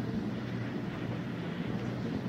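Steady hiss with a low hum from a 1970s mono cassette recording of a room, with no voices.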